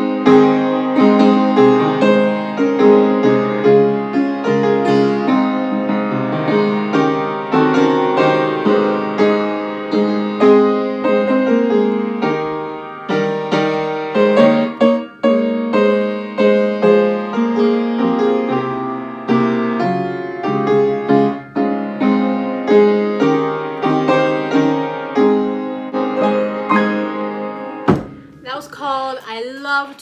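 Upright acoustic piano playing a hymn in full chords at a steady tempo. It cuts off abruptly near the end.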